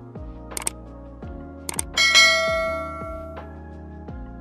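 Subscribe-button animation sound effects over background music with a regular beat: two quick double clicks, then a bright notification-bell ding about two seconds in that rings out for over a second.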